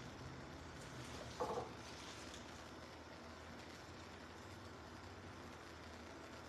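Faint kitchen room tone with a low steady hum, and one brief soft sound about a second and a half in.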